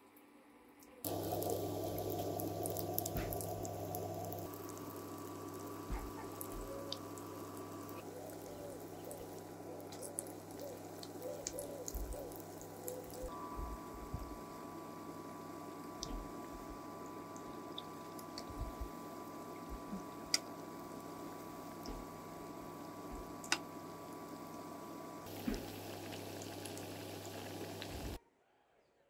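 Potato balls deep-frying in hot oil in a small pot: a steady sizzle with scattered pops and crackles, starting about a second in. Under it runs a low electrical hum from the electric hob, with a thin high tone that comes and goes.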